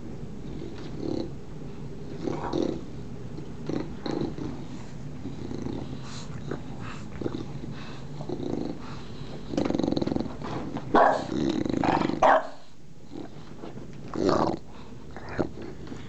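English bulldogs growling at each other in a rough tussle: a continuous low rumbling growl, with louder growls about ten to twelve seconds in and again near the end.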